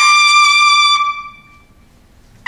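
Solo trumpet, unaccompanied, holding a single high note for about a second, then stopping; the note rings briefly in the hall before a pause.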